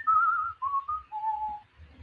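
A man whistling a short idle tune: a few clear notes stepping down in pitch, one of them wavering, ending on a lower held note.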